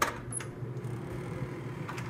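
A hotel room door's latch clicks sharply as the door is opened, followed by a steady low hum and a faint knock near the end.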